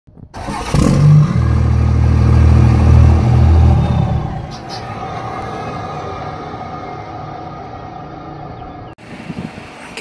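Intro sound effect: a sudden burst about a second in, then a loud, deep, engine-like rumble for about three seconds that fades away slowly.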